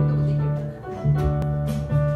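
A small band playing together live, with electric bass and keyboard; the playing drops back briefly just before a second in, then resumes with sharper plucked note attacks.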